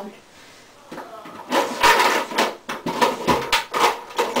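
Clattering knocks and rattles of small household items being handled and moved about, starting about a second and a half in after a quiet stretch.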